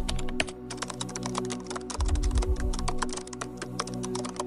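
Background music with held chords and a deep bass note that comes in about halfway through, over a fast run of light clicks like keyboard typing.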